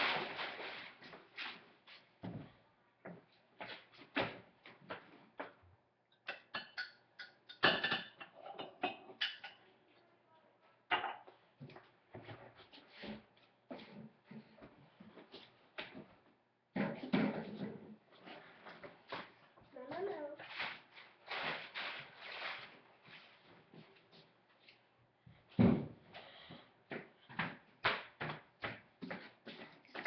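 Scattered knocks, clicks and clatters of kitchen items being handled, the sharpest near the start, about seven seconds in and about twenty-five seconds in, with stretches of quiet indistinct speech.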